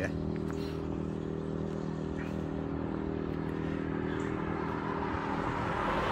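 Road traffic on a main road: a steady low engine hum, with a car approaching and its tyre noise growing louder near the end.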